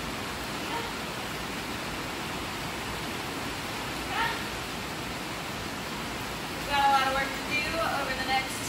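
Steady hiss of background noise, with a few short vocal sounds: a brief rising one about halfway and a louder, longer one near the end.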